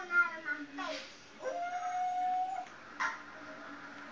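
A dog whimpering in a few falling whines, then one long howl held at a steady pitch for about a second.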